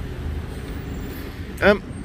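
Steady low rumble of city road traffic, with a man's brief "um" near the end.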